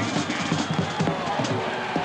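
Band music with drums playing over the stadium's background noise.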